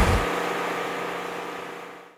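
A low, steady mechanical hum with a faint held tone, fading out over about two seconds.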